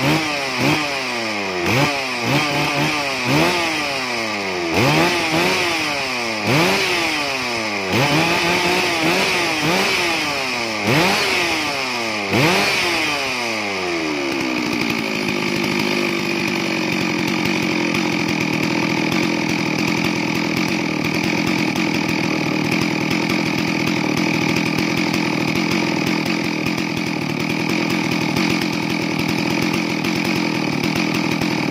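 Stihl MS 660 Magnum chainsaw's two-stroke engine running on a test: it is revved up and let drop again and again, about once every second or so. For roughly the second half it settles back to a steady idle.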